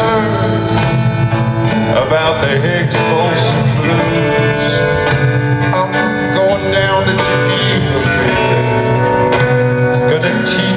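Live rock band playing a slow blues number, with guitar, keyboards, bass and drums, captured from the crowd in a large arena.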